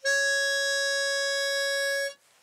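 A pitch pipe blown to give one steady high note, held for about two seconds, sounding the starting pitch for an a cappella vocal quartet. The note is dry, with no echo, because it is played in an anechoic chamber, and it stops dead.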